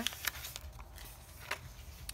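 Paper journal pages being turned and handled: faint rustling with a few light taps, the sharpest about one and a half seconds in.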